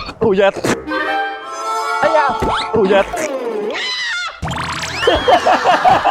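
Comedy sound effects and stinger music laid over a slapstick fall: a few sharp knocks at the start, then held musical tones and cartoonish sliding, boing-like glides that rise and fall.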